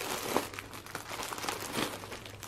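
Plastic sheet protectors and paper pattern envelopes crinkling and rustling as binder pages are turned and handled.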